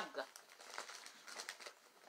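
Faint crinkling and rustling of things being rummaged through by hand, a scatter of soft crackles that dies away before the end.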